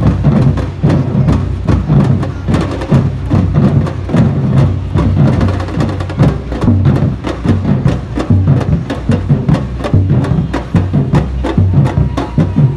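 A group of large double-headed drums beaten with felt mallets and sticks in a fast, driving rhythm: deep booms under a dense run of sharp stick strikes.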